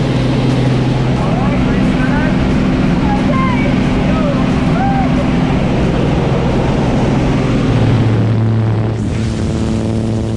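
Single-engine light aircraft's piston engine and propeller droning steadily, heard from inside the cabin, with voices calling out over it through the middle.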